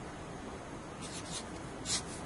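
Felt-tip marker writing: a few short scratchy strokes about a second in, and a louder stroke near the end, over a faint steady hiss.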